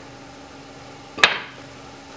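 Pork pieces stewing gently in their own juice in a stainless frying pan on low heat, a faint steady sizzle, broken about a second in by one sharp knock of the wooden spatula against the pan as it is lifted out.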